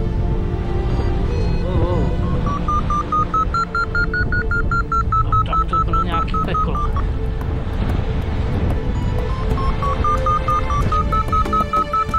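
Paraglider variometer beeping in two runs of quick beeps, each rising in pitch and then easing back down: the climb tone that signals the glider is rising in lift. A steady low rushing noise runs underneath.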